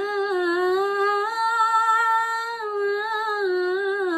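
A woman singing an Assamese dihanaam devotional chant solo, without accompaniment, holding long drawn-out vowels that rise and fall slowly in pitch.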